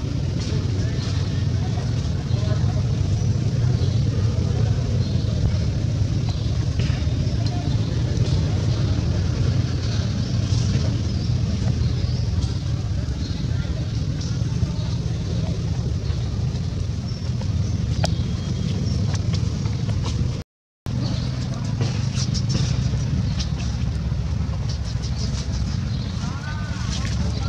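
Steady low rumble of outdoor background noise, with faint scattered ticks above it. The sound drops out completely for a moment about twenty seconds in.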